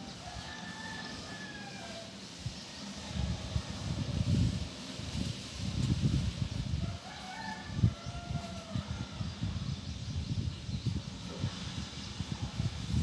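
Two animal calls, one near the start and one about seven seconds in, each lasting about a second. Under them runs a low, uneven rumbling with knocks that gets louder partway through.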